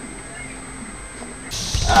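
Faint room tone for about a second and a half, then an abrupt switch to outdoor audio with wind rumbling on the microphone. Near the end a man starts a long, drawn-out "uhh".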